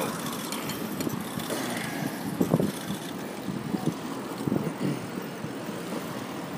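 Street traffic noise, a steady hum of cars on a city street, with a few brief knocks and rustles.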